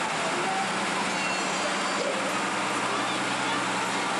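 Farm tractor's diesel engine running steadily at low speed as it tows a parade float past close by, with a low steady hum under a wash of crowd noise.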